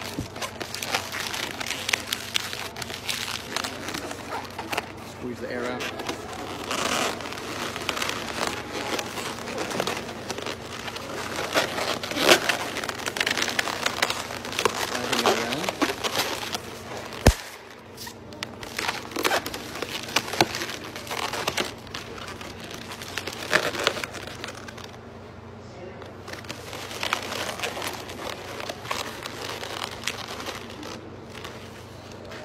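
Lime-green latex twisting balloon being rubbed and twisted by hand, with rubbery squeaks and crinkly rubbing throughout. A single sharp click comes a little over halfway through.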